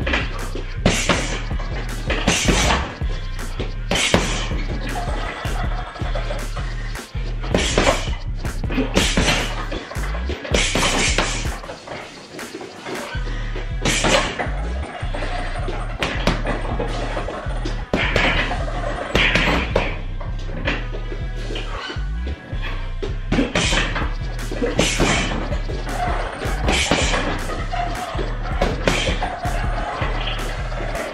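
Background music over gloved punches landing on a hanging uppercut heavy bag, the strikes coming singly and in short combinations at irregular intervals.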